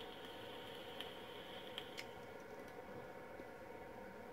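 Faint hiss of air drawn through a Mutation XV3 rebuildable dripping atomizer while its coil fires, with a few light crackles, lasting about two seconds.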